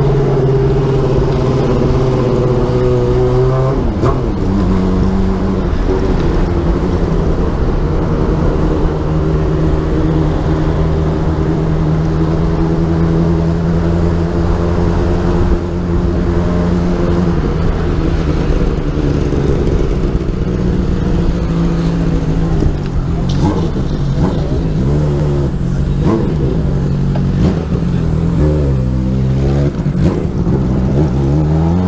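Road bicycle riding at speed: a steady noise from air rushing over the handlebar-mounted camera, with a hum from the moving bike whose pitch shifts about four seconds in and dips and rises again near the end as the bike slows through a bend.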